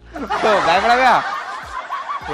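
Men laughing: a loud burst of chuckling in the first second or so that tapers off.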